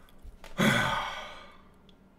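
A man's single long sigh about half a second in, voiced at the start and trailing off over about a second.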